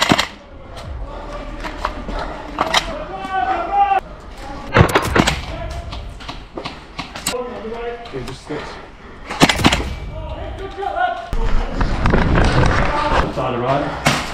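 Scattered sharp cracks of airsoft gunfire, single shots and close pairs, the loudest about five and nine and a half seconds in, amid indistinct voices calling out.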